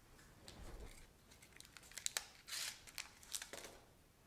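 Faint rustling and a few sharp little clicks of handling: hands, clothing and a patient's forearm moving on a padded treatment table. The clicks bunch up around the middle, followed by a brief rustle.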